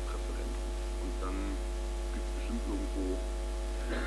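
Steady electrical mains hum: a strong low drone with a row of higher steady overtones, unchanging throughout, with faint murmured voices over it.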